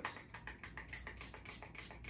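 Small airbrush cleaning brush scrubbing back and forth inside an airbrush cartridge to clear out old ink: a faint, rapid scratchy ticking, about seven strokes a second.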